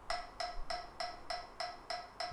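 Metronome clicking steadily at about 200 beats per minute, roughly three short pitched ticks a second, counting time for the bass lick.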